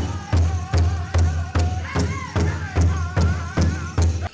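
Powwow drum group singing around a large drum, striking it together in steady beats about two and a half times a second, with high, wavering voices over the beat.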